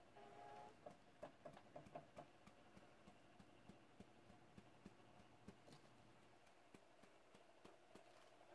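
Near silence, with faint, irregular light taps of a sponge dauber patting alcohol ink onto a tumbler.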